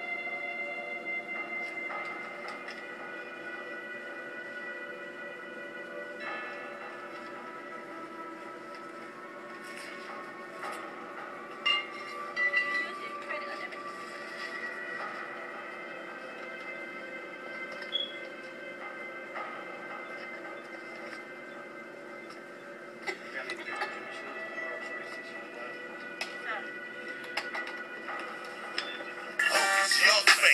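Soundtrack of a video playing back through small computer speakers, picked up in the room: a steady, sustained drone of held tones with a few faint clicks and indistinct sounds. Loud rap music cuts in just before the end.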